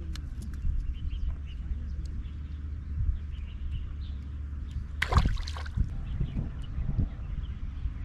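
Steady low rumble with faint bird chirps. About five seconds in there is a short, loud splash of water as a fish is hooked on a long hand pole, followed by a few softer sloshes while the fish pulls on the bent pole.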